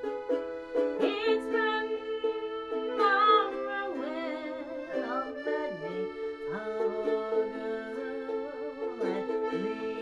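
A button accordion holding steady reed chords while a ukulele is strummed along, and a woman's voice sings over them at times.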